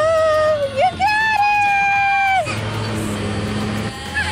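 A high voice drawing out a long exclaimed "ohhh". It rises in pitch, breaks off briefly, then holds a second "ohhh" on one high note that stops about two and a half seconds in.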